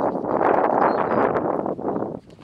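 Leafy fruit-tree branches rustling and scraping close against the microphone as the camera pushes through them, a dense crackling rustle that stops abruptly at the end.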